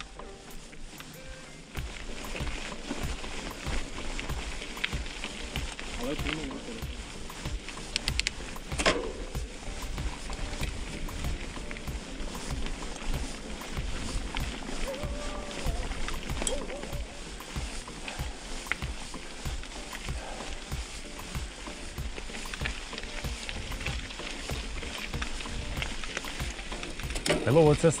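Mountain bike rolling along a gravel road, tyres crunching on loose stones, with wind rumbling on the action camera's microphone. A single sharp knock about nine seconds in.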